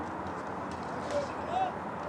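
Faint distant shouted voices, with a few footfalls on dirt.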